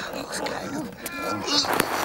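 A wordless voice muttering and grumbling in short broken sounds.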